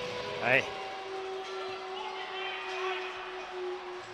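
Faint music with long held notes over the steady background noise of an ice arena during a stoppage in play, after one brief spoken word near the start.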